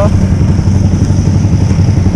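Yamaha Exciter 150 single-cylinder engine idling steadily with a low hum, heard close up from the rider's position.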